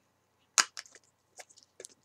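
Packing tape being pulled off a package: a few short sharp cracks, the loudest about half a second in, then smaller ticks.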